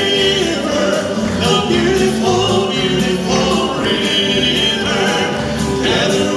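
Male gospel quartet singing in four-part harmony through microphones, holding long notes.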